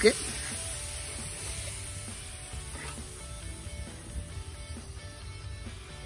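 Beer sizzling in a hot aluminium foil tray around grilling beef ribs: a steady hiss that eases off slowly. Faint background music plays underneath.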